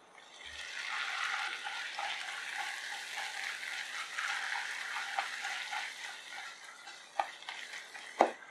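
Onion-tomato masala sizzling in oil in a pan while a wooden spatula stirs it, with frequent small scrapes and taps against the pan. The sizzle starts about half a second in, and a sharp knock comes near the end.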